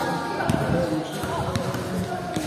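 Basketballs bouncing on a hard court floor, a few scattered dribbles with one sharper bounce about half a second in, amid children's voices.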